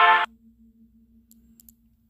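A short tune from a phone app's animated Mickey Mouse figure stops abruptly a moment in. What follows is near quiet, with a faint steady hum and a few faint clicks.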